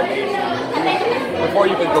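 Speech only: a man talking at normal conversational level, with a murmur of chatter in a busy room behind him.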